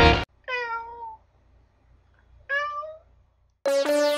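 A cat meows twice, about two seconds apart, the first call falling in pitch. Music cuts off just before the first meow and starts again near the end.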